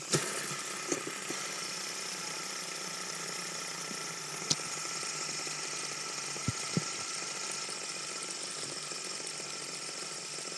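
Three fidget spinners spinning together on a tabletop, a steady whir from their bearings, with a few light clicks along the way.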